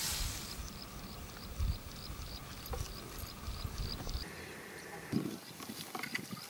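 A cricket chirping steadily, about three high chirps a second, with a few sharp clicks of a steel spoon against the pan. A frying sizzle from the curry fades out in the first half-second.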